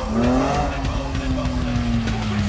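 Car engine revving hard while the tyres squeal and skid on asphalt. The engine note climbs at the start, then holds and slowly sags in pitch.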